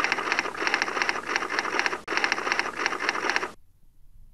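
Typing sound effect: rapid, dense mechanical clicking like a typewriter, in two runs, the first about two seconds long, then a brief break and a second run of about one and a half seconds that cuts off suddenly.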